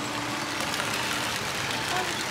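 Steady background noise with a faint low hum, like a motor running, that stops a little past halfway.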